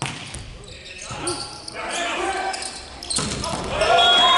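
Volleyball struck during a rally in a large indoor hall: a sharp hit at the start and another about three seconds in, after which it gets louder, with voices and crowd noise between.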